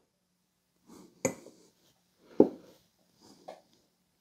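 A few light knocks and clicks from handling metal engine parts on a workbench, the two loudest a little over a second apart.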